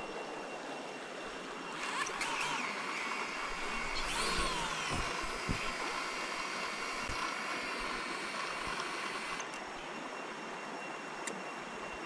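Small folding quadcopter drone's motors spinning up on the ground with a rising whine about two seconds in. The pitch surges and glides back down a couple of seconds later, then holds steady before cutting off abruptly near the end.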